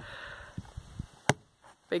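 A hand axe chopping firewood: one sharp wooden knock about a second in, the axe blade stuck fast in the log.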